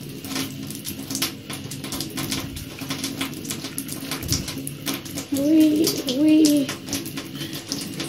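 Water dripping and splashing in small irregular taps in a tiled bathroom. A short hummed voice sound comes twice, about halfway through.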